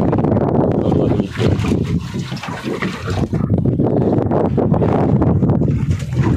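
Wind buffeting the microphone: a loud, uneven rumble that dips and swells.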